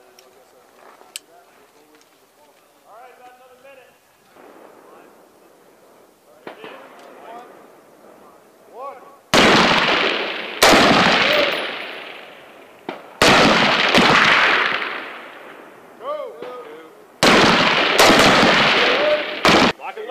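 M4 carbine firing single shots, about five of them spaced one to four seconds apart in the second half, each sharp crack followed by a long fading echo. The first half is quiet, with faint voices.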